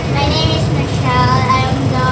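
A high girl's or woman's voice in drawn-out notes like singing, with a couple of held notes about a second in, over a steady low background hum.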